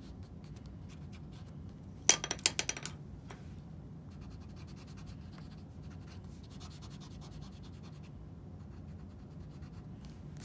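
Graphite pencil scratching on sketchbook paper as a nose drawing is shaded, with a loud quick run of about ten sharp scratches or clicks about two seconds in. After that comes a fainter, steady rubbing of a pencil-top eraser on the paper.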